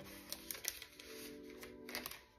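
Soft background music holding a chord, faint, with a few light clicks and rustles of paper and a plastic page sleeve being handled.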